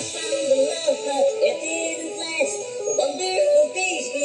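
Electronic dance music mixed from CDJ decks through a DJ mixer: a stepping synth melody over a sung or synthetic vocal line. The low kick drum sounds once just after the start, then drops out.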